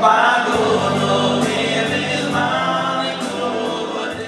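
Male choir singing in harmony, a loud held chord entering at the start and carried through, easing off slightly toward the end.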